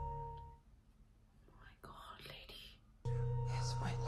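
Sustained drone of the series' score, held low and mid tones, fades out within the first second. About two seconds in, a man whispers 'Lyusya?', and just after three seconds in the steady drone cuts back in suddenly.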